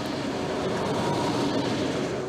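Train running on the rails, a steady noise with a faint tone in it and no clear clicks or breaks.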